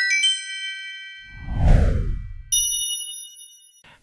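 Logo sting: a bright bell-like chime rings out and fades, then a whoosh that falls in pitch with a low rumble, then a second, higher chime about halfway through that cuts off near the end.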